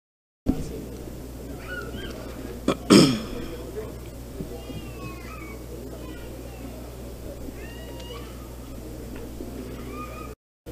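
Ambience through the PA microphone, cutting in suddenly about half a second in: a steady low hum with faint, short, high chirping sounds, and one loud cough about three seconds in.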